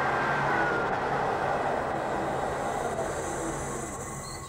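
Lathe running at high speed with a polished acrylic pen blank spinning on the mandrel, a steady mechanical noise with a low hum that fades near the end.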